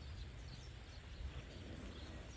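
Faint open-air feedlot background: a steady low rumble with a few faint, short bird chirps.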